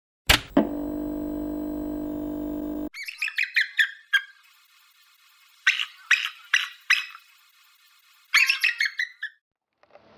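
A click, then a steady held tone for about two seconds, followed by a bald eagle calling in three bursts of high, chittering chirps with pauses between.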